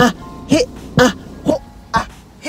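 A man's voice chanting the short exercise syllables 'a, he, a, ho' in a steady rhythm, about two a second, each a sharp forced breath out as he pulls his belly in on 'he' and 'ho', over background music.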